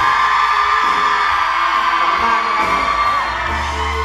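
Live pop concert sound: a long, high held vocal cry over the band's sustained backing music, answered by audience cheering, about three seconds long. The held note fades near the end while the music plays on.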